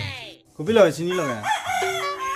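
A rooster crowing, ending in a long, held high note that starts near the end.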